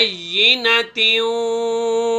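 A man reciting Quranic Arabic in a melodic chant: a short phrase that rises and falls in pitch, a brief break, then a long vowel held at one steady pitch from about a second in.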